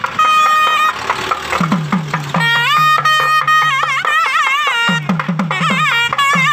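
Nadaswaram playing an ornamented melody, holding long notes and then wavering in quick gliding turns, over a thavil drum whose low strokes bend downward in pitch. The drum comes in quick runs about two seconds in and again near the end.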